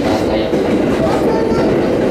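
Rinkai Line 70-000 series commuter train running, heard from inside the passenger car: steady rolling noise of the wheels on the rails.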